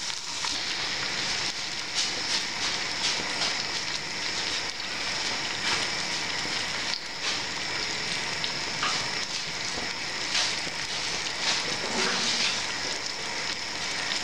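Hot oil and water sizzling together in a pot of fried onions, whole spices and ginger-garlic paste, with water just poured in. A steady hiss is dotted with many small crackles and pops.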